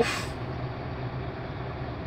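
Mercedes-Benz Actros truck's diesel engine idling steadily, heard from inside the cab as a low, even hum.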